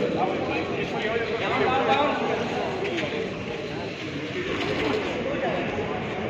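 Indistinct voices of several people talking in the background, with no clear words.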